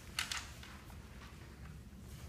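Quiet room tone: a steady low hum, with one brief soft hiss a fraction of a second in and a few faint ticks after it.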